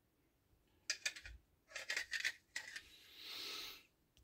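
Red plastic model torso parts being handled and fitted together: faint clusters of short clicks and scrapes of plastic on plastic, then a brief rubbing sound near the end.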